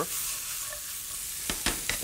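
Sliced shallots sizzling in hot fat in a frying pan, with a few sharp clicks from a metal utensil against the pan about a second and a half in.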